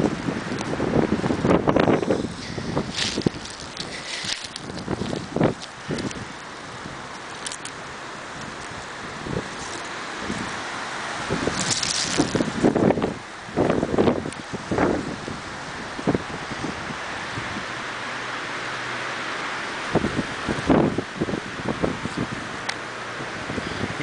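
Wind buffeting the microphone with a steady rush, broken by irregular rustles and knocks from brush and low shrubs being pushed through close by.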